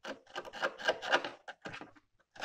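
A thin metal tool scraping and picking at the rusted sheet-metal seam by an Audi 100's wheel arch, in a quick run of short, irregular scratching strokes. The metal is heavily rusted on the surface but not rotted through.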